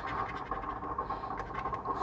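A coin scraping the scratch-off coating from a lottery ticket, a rapid run of short scrapes.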